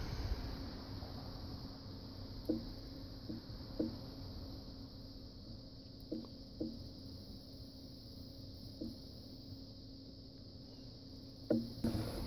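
Quiet workbench with a faint steady hum and a high steady whine, broken by a handful of soft ticks as a soldering iron and solder wire work a transformer pin on a TV inverter board.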